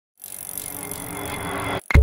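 Intro sound effect: a rush of noise that swells louder, cuts off abruptly, then a loud, deep hit near the end as the logo appears.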